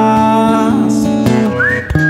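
A man whistling a melody over a strummed acoustic guitar; about one and a half seconds in the whistle slides up into a high held note.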